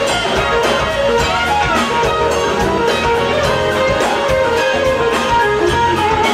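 Live band music led by an electric guitar playing a moving melodic line over bass and drums, with a steady beat of cymbal ticks.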